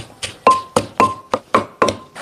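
A wooden pestle pounding in a clay mortar, about four strikes a second, mashing mackerel and straw mushrooms into a paste. A few of the strikes leave a brief ringing tone.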